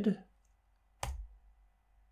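A single sharp keystroke on a laptop keyboard about a second in: the Enter key pressed to run a typed command.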